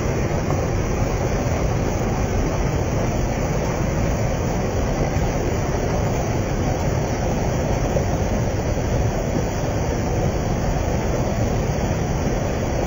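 Floodwater from an overflowing tank rushing in a steady, heavy torrent through a washed-out road embankment.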